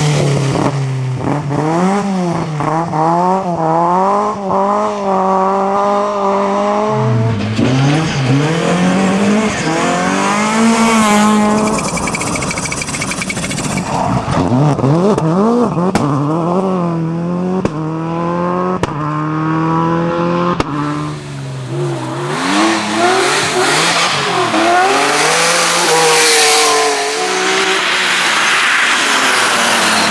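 Several rally cars driven flat out on a special stage one after another, engines revving high and dropping back over and over through gear changes, with a few sharp clicks about halfway through.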